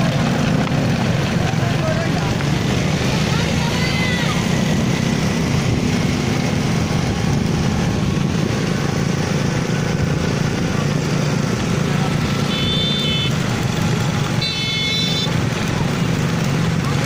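Small motorcycle engines running steadily as they ride along, a low even drone, with a few short high-pitched calls over it.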